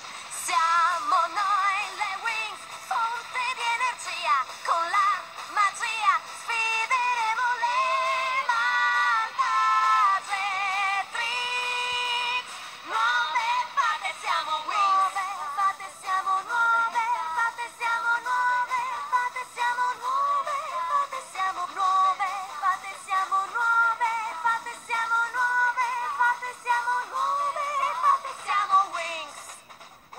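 High-pitched a cappella singing of a pop melody, with no instruments underneath.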